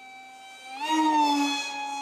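Electric RC park jet's brushless motor (DYS BE2208 2600 Kv) and three-blade 6x4x3 prop whining in flight, a smooth, even-pitched whine that rises in pitch and grows much louder about a second in.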